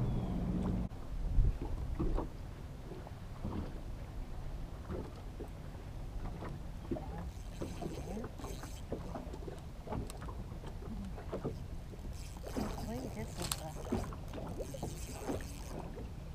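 Water lapping against a fishing boat's hull, with scattered light knocks and taps of gear on the deck. A steady low hum cuts off about a second in.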